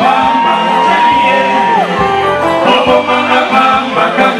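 Live Congolese band music with electric guitars and singing, a high note held for nearly two seconds near the start and then dropping away.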